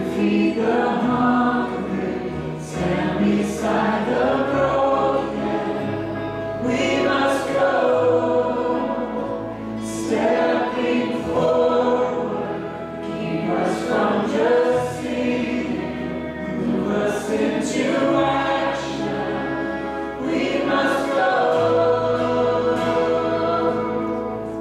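Live worship band playing a slow song with singing, on guitars, bass and keyboard; the held bass notes change every few seconds.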